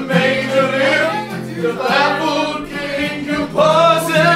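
Several voices singing loudly together in a casual group sing-along, accompanied by an acoustic guitar.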